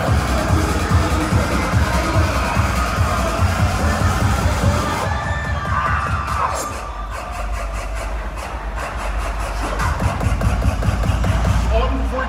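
Dubstep DJ set played loud over a concert sound system, recorded from the crowd. Heavy, fast-pulsing bass drops away about five seconds in to a sparser passage with a sliding synth tone, and the bass builds back up near the end.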